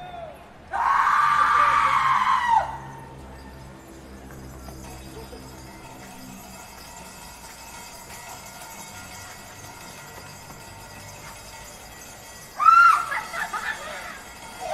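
A woman's long, high wailing cry about a second in, lasting about two seconds and falling off at the end. A quieter stretch with low steady tones follows, and near the end come several short shrieking cries from actors' voices.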